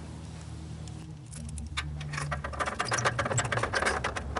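Hand ratchet wrench clicking in quick runs as bolts are turned and snugged up, starting about a second in.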